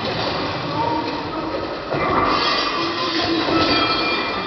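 The sound-design soundtrack of a projection-mapping light show, played over outdoor loudspeakers. It is a dense, noisy, rail-like mechanical wash with a few thin held tones, dipping briefly just before two seconds in and then growing louder.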